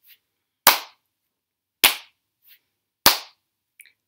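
Hand claps keeping a slow, steady beat: three sharp claps about a second and a quarter apart.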